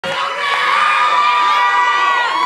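Audience cheering and screaming, many high voices held and overlapping at once.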